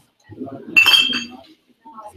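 A glass clinks about a second in and rings briefly with a high tone, over people talking.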